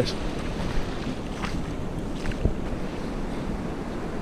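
Wind buffeting the microphone over the steady wash of the incoming sea on the rocky shore, with a few faint knocks.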